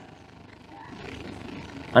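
A pause between a man's spoken sentences, leaving only faint steady background noise, a low hum and hiss.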